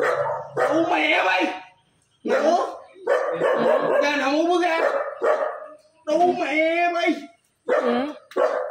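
A man yelling loudly at someone in several long, drawn-out outbursts with brief pauses between them, too slurred and strained for the words to come through.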